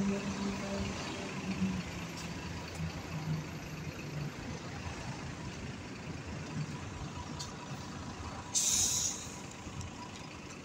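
Irisbus Citelis city bus in street traffic: a steady traffic rumble, with a pitched engine hum fading over the first two seconds. About eight and a half seconds in comes a short hiss of compressed air from the bus's air brakes, lasting about half a second.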